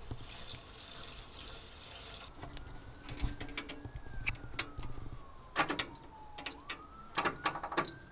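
Scattered sharp clicks and knocks of hands working at the wiring under an old bulldozer's dashboard, the loudest about halfway through and again near the end. A faint siren wails slowly up and down in the background.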